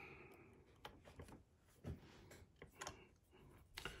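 Near silence with a few faint, scattered metallic clicks of a tension wrench and dimple pick being set into a Mul-T-Lock Integrator pin-in-pin cylinder.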